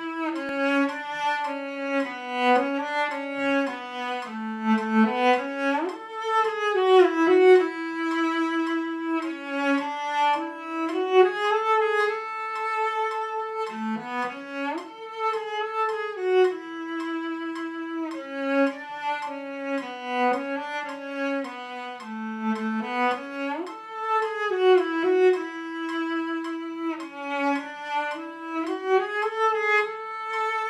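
A cello played with the bow: a slow, smooth melody moving stepwise up and down, with audible slides between notes as the player shifts position about 6 and 14 seconds in.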